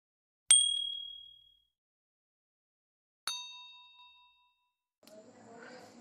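Two ding sound effects from a like-and-subscribe button animation, about three seconds apart, each struck sharply and ringing away over about a second; the second is lower and holds several tones at once.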